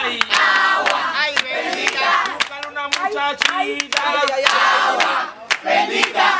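A group of people clapping a steady rhythm by hand while several voices sing together.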